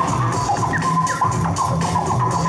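Loud hip-hop break music with a steady beat of about two hits a second and a heavy bass line, played for a breakdance battle. Short sliding pitched sounds run over the beat.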